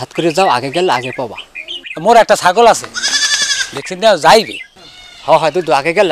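A goat bleats once, a short wavering call about three seconds in, among men talking.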